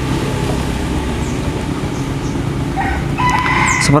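A short animal call of a few stepped pitched notes about three seconds in, over a steady low background rumble.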